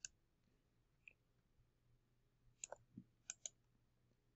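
Faint computer mouse clicks over near silence: a single click at the start and another about a second in, then several quick clicks in pairs during the last second and a half.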